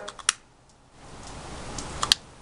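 A few sharp clicks at the start, then a soft hiss that rises over the last second as alcohol hand sanitizer on a hand catches with a blue flame.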